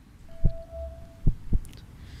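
Quiz-show question-reveal sound effect: three deep, heartbeat-like thumps with a single steady tone held under the first second.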